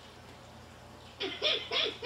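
A recorded laugh played back through small speakers from a CAR/P 300 audio recorder/player board, which has returned to looping its first message in dual-message mode. After about a second of faint hum, three short laughing syllables come in.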